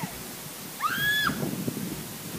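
A girl's short high-pitched squeal during a rough-and-tumble tussle, rising and falling once about a second in, with scuffling on the dirt path underneath.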